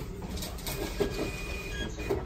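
Quiet indoor room ambience with a low steady background, a few faint clicks and a faint thin high-pitched tone.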